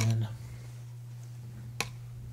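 A single sharp click near the end, over a steady low hum.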